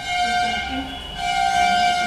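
A loud, steady high-pitched tone with many overtones, held for about a second, dipping briefly, then held again until it cuts off sharply.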